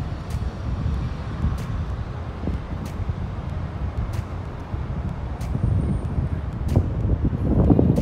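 Outdoor city background: a steady low rumble of traffic mixed with wind buffeting the microphone, growing a little louder near the end.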